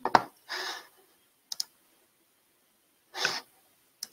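Computer mouse clicks close to a headset microphone: a sharp click just after the start and a quick double click about a second and a half in. Two short breaths into the microphone come between them.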